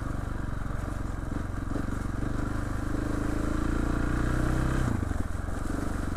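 Trail motorcycle engine running under steady throttle while riding. Its pitch climbs slowly, then the revs drop sharply just before five seconds in and it carries on at a lower note.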